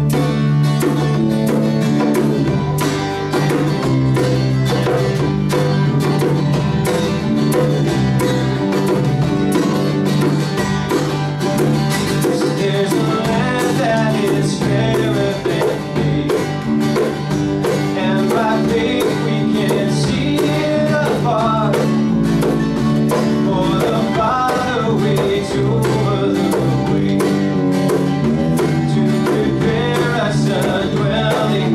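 Live band playing an upbeat Christian song on acoustic guitar and bass guitar over a steady beat, with a voice singing the melody from partway through.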